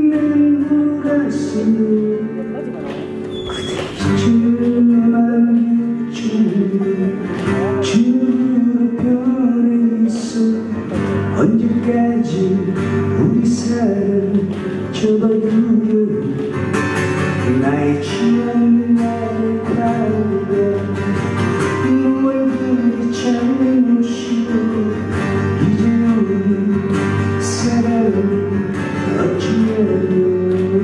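A man singing a slow ballad live into a microphone, accompanied by his own strummed acoustic guitar, with instrumental backing and regular light percussion strokes.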